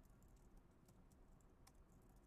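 Faint computer keyboard typing: irregular quick key clicks, with a couple of sharper keystrokes about a second in and near the end.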